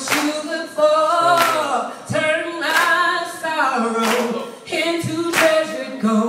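A woman singing a cappella into a microphone, with the crowd clapping together on the beat, about one clap every second and a half.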